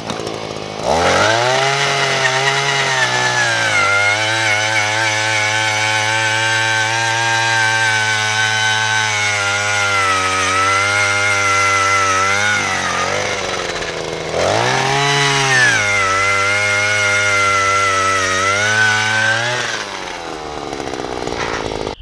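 Harbor Freight Predator handheld earth auger's small two-stroke engine revving up about a second in and running steadily under load as the bit bores into the soil. It drops back to idle about halfway through, is revved again a second or so later for a second bout of boring, and drops back again near the end.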